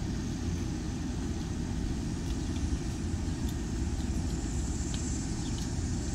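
A steady low background rumble, with a few faint ticks above it.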